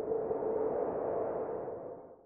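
Synthesized title-card sound effect: a swelling, hissy tone with a steady hum-like pitch running through it, fading out near the end.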